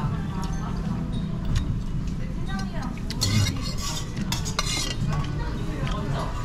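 Metal spoon scraping and clinking against a brass bowl as bibimbap is stirred and scooped, the scraping busiest about halfway through.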